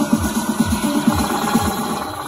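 Electronic dance music with a steady kick drum, about two beats a second, played loud over a festival stage's sound system.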